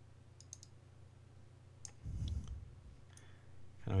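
A few faint computer mouse clicks: three quick ones about half a second in and another near two seconds, over a low steady hum.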